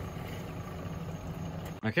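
Steady low hum of running laboratory equipment.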